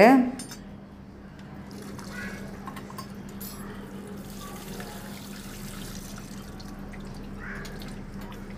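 Thick white sauce bubbling as it simmers, stirred with a steel spoon in a metal kadai. Soft liquid glooping with faint spoon scrapes and clicks over a steady low hum.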